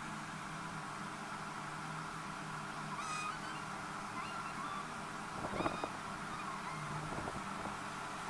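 Steady background hum with a few short, high bird calls scattered through it, and one brief louder sound about five and a half seconds in.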